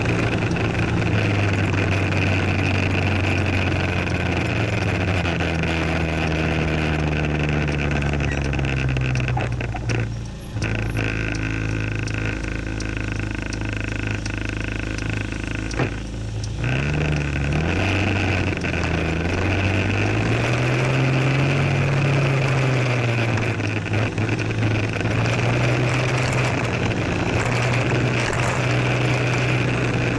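A motor scooter's small engine heard from on board. It slows and drops in pitch, idles steadily for about six seconds from about ten seconds in, then revs up to pull away and settles back into cruising. Wind rushes over the microphone whenever it is moving.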